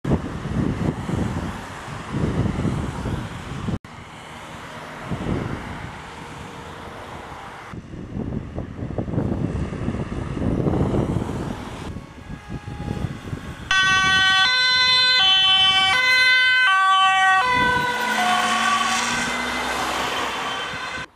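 Emergency vehicle two-tone siren alternating between a high and a low note about twice a second, starting loud about two-thirds of the way in. Before it there is only uneven low noise.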